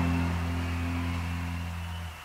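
Closing chord of a 1980s heavy/power metal song on a demo recording, electric guitar and bass held and slowly fading out.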